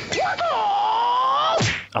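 One long, high-pitched gliding cry, lasting about a second and a half: it rises sharply at first, sags, climbs slowly again and then cuts off suddenly.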